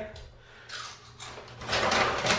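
A plastic potato-chip bag crinkling as it is handled. It starts faintly and gets louder near the end.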